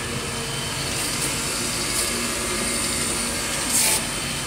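Surface grinder running steadily while its wheel grinds a steel workpiece, with short hissing bursts as the wheel passes over the metal; the loudest comes near the end.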